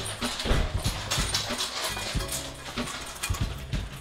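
Dogs moving about close by, with short clicks and scuffs throughout.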